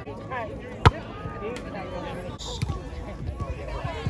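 A volleyball struck by a player with one sharp slap about a second in and a fainter hit past halfway, over the chatter and calls of players and onlookers.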